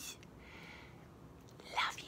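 A woman's faint whisper, then a brief voiced sound from her near the end.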